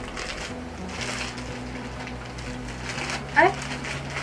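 Scissors snipping through a plastic courier mailer, the plastic rustling, over background music with a steady low bass line; a short exclamation near the end.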